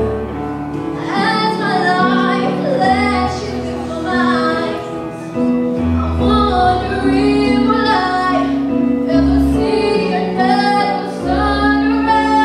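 A woman singing a pop ballad live with instrumental accompaniment underneath: sustained bass and chord notes.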